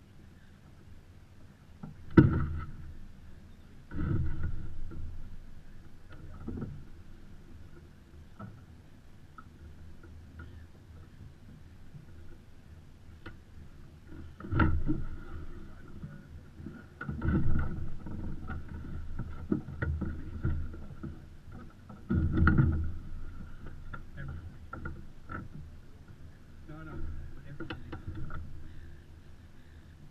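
Water slapping against the hull of a Beneteau First 337 yacht moving slowly in light wind, in irregular splashes a few seconds apart, loudest about two seconds in. A faint steady hum runs underneath.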